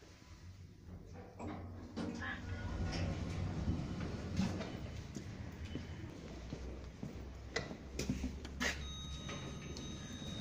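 Footsteps and a string of knocks and clicks as someone walks between Otis Genesis lifts and the lift's sliding doors move, over a low steady hum. Two sharp clicks come near the end, and a thin steady high tone starts just after them.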